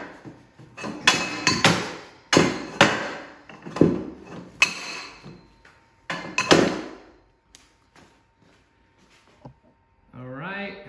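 Steel square tubes clanking against each other and the steel bench as they are gathered and stacked: about eight ringing metal knocks over the first seven seconds, then only a few faint taps.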